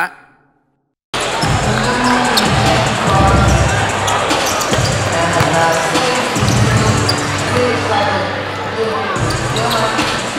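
A short sound effect fades out into about a second of silence, then gym ambience: several basketballs bouncing on a hardwood court during warm-ups, over a crowd chattering.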